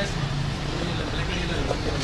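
Steady low background rumble with faint, distant voices over it.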